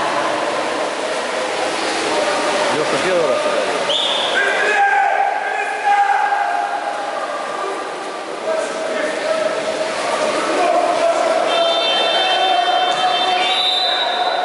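Players' voices calling out across an echoing indoor pool hall during a water polo game, with a short high tone about four seconds in.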